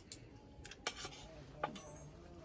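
A metal spoon clinking and scraping against a metal bowl of rice, a few light, scattered clinks.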